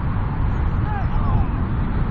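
Wind buffeting the camera microphone in a steady low rumble, with faint distant voices of footballers calling across the pitch.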